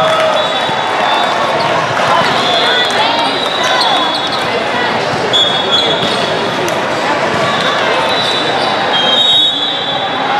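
Echoing hall ambience of a multi-court volleyball tournament: many voices talking at once, balls bouncing, and scattered short high squeaks.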